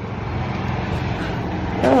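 A steady low rumbling noise with no clear pitch. A woman's voice starts near the end.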